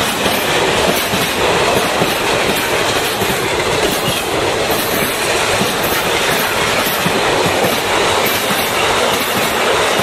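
Container freight train passing close by, its wagon wheels running on the rails with a steady loud rolling noise and a repeated clatter as they cross rail joints.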